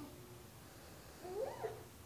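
A baby's short squealing vocalization, one call that rises and falls in pitch, about a second in and lasting about half a second.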